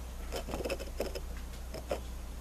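Two quick clusters of small clicks and pops, the second shorter and near the end, over a steady low electrical hum.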